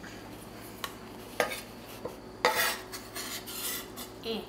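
Chef's knife scraping chopped cherry tomatoes across a wooden cutting board into a glass bowl. There are two sharp clicks in the first half and then short scraping sounds.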